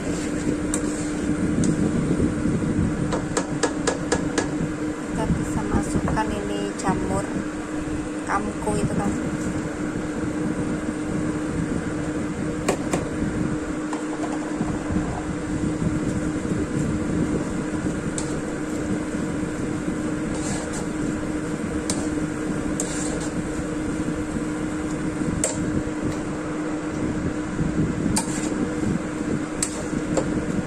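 A plastic spatula clicking and scraping against a non-stick wok as sauce simmers and enoki mushrooms are stirred in, over a steady hum. There are sharp clicks now and then, clustered in the first few seconds and again in the second half.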